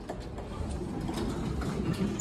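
Elevator landing doors sliding open: a low mechanical rumble with a few light clicks.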